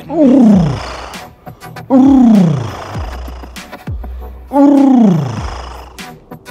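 Three loud roars like a lion's, each about a second long and sliding down in pitch, about two seconds apart.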